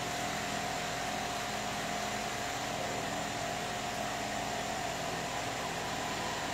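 Steady background noise: an even hiss with a faint low hum and a thin steady tone, unchanging.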